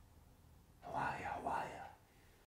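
A man's short whispered utterance, lasting about a second and starting a little under a second in, over quiet room tone.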